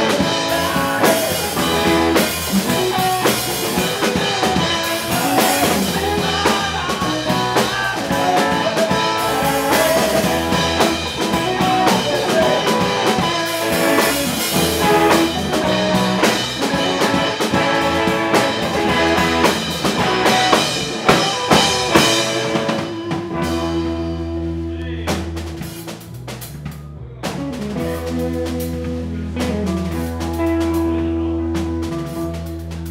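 A live band playing loud: two electric guitars, electric bass and drum kit. About 23 seconds in, the drums drop out and the sound thins to long held bass and guitar notes.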